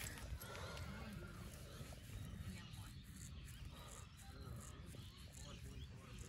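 Faint outdoor background with a low rumble and faint distant voices.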